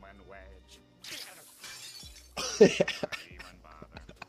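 Cartoon sound effect of glass shattering: a crash about a second in, then a louder one about halfway through.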